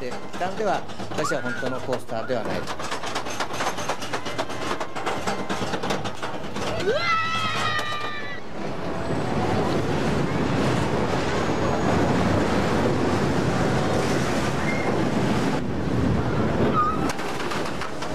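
Steel roller coaster train: rapid clicking and clattering for the first half, with a rider's laughing shriek about seven seconds in, then a steady, louder rushing rumble as the train runs at speed.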